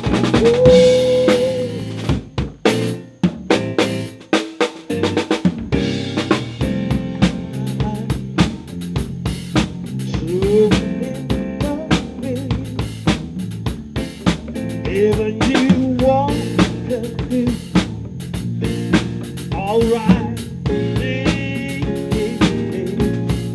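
A live band playing, driven by a drum kit with rimshots, snare and bass drum, under a pitched lead line that slides up into its notes. About two seconds in, the band thins to a few sharp drum hits for a couple of seconds, then the full groove comes back.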